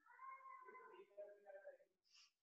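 Faint cat meowing: a drawn-out meow lasting nearly two seconds, changing pitch about halfway through.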